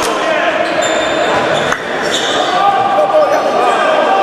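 Futsal ball being kicked and bouncing on a sports-hall floor, with one sharp kick about two seconds in, among players' voices echoing in the hall.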